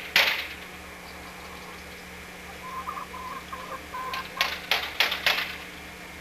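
Sharp clacking knocks over a steady low hum: one right at the start, then a quick run of them, about three a second, near the end. A faint broken tone sits in between.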